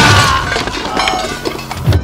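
A loud crash of shattering and breaking debris, its ringing tail fading over the first half second, followed by a low thump near the end, over a music score.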